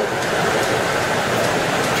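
Steady rushing noise of an open glory hole furnace, running at about 2,200 to 2,250 degrees, heard up close while a glass piece on a punty is reheated in its opening.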